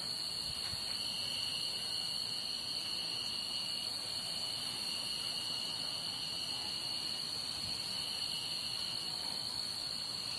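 Steady chorus of insects: a continuous high-pitched buzz, with a second, slightly lower whine that fades in and out.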